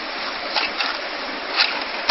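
Handling noise from a processor retail box: a few soft rustles and light clicks as the CPU in its clear plastic clamshell is lifted out, over a steady background hiss.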